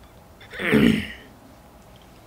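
A man clears his throat once, a short throaty burst lasting well under a second, beginning about half a second in.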